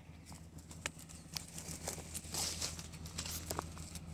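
Faint footsteps and rustling in grass and on a dirt track, with a few scattered sharp clicks, over a low steady hum.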